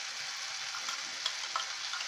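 Chopped onion, tomato and coriander sizzling steadily in oil in a nonstick frying pan, the onions now browned. A few faint taps of the steel spatula sound through the sizzle.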